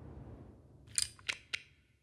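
BESSEY STC auto-adjust horizontal toggle clamp being closed by hand onto a block: a quick run of three or four sharp metal clicks about a second in as the lever goes over centre and locks.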